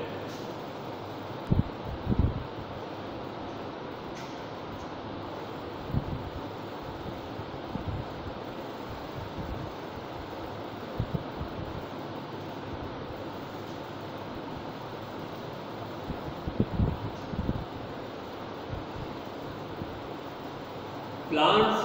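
Chalk writing on a classroom blackboard over steady room noise, with a few short, soft low knocks near the start, around the middle and again near the end.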